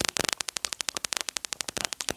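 A fast, even train of sharp clicks, about fifteen to twenty a second, at a low, steady level.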